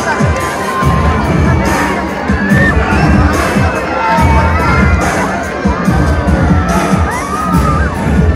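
Large crowd cheering and shouting, many high voices calling out at once, over amplified music with a steady bass beat.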